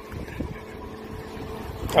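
Wind buffeting the microphone as a low, even rumble, with a faint steady hum underneath.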